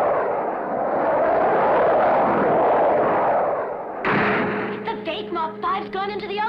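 Cartoon sound effect of a jet-powered car diving through the air: a loud, steady rushing roar with slow swells. About four seconds in it cuts sharply to a lower steady engine hum with voices over it.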